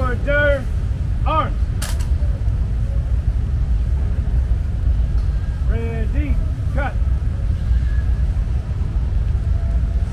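Drawn-out shouted drill commands that rise and fall, given to a Marine rifle detail as it moves its rifles, over a steady low rumble of city traffic. A single sharp click comes about two seconds in.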